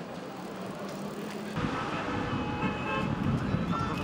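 Busy street noise of a crowd and traffic, with voices. It gets suddenly louder and denser about one and a half seconds in, with some held tones.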